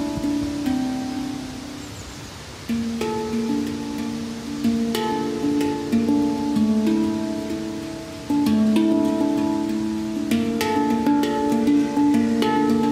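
Handpan played with bare hands: struck steel notes ringing out in a melodic pattern. The notes die away about two seconds in before playing picks up again, and it grows louder from about eight seconds in.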